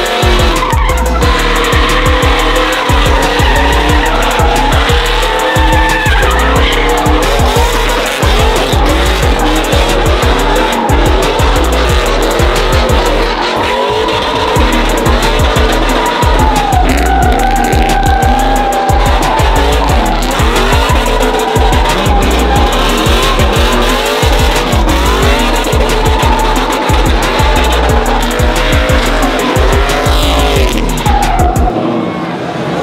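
Single-cab pickup trucks doing smoky burnouts and donuts: V8 engines held at high revs, pitch wavering and gliding as the drivers work the throttle, with tyres squealing and spinning on the pavement. A song with a heavy steady beat plays loudly along with it.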